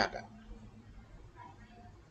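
A man's voice finishing a word at the very start, then quiet room tone with a faint, brief murmur about one and a half seconds in.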